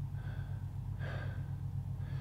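A man breathing audibly in and out at a slightly faster than normal pace, as in a breathwork cycle: soft weaker and stronger breaths alternating about once a second. A steady low hum runs underneath.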